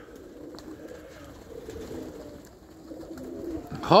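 Domestic pigeons cooing softly in and around their loft.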